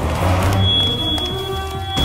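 Dramatic film background score with a heavy low pulse. A single high, steady note comes in about half a second in and is held.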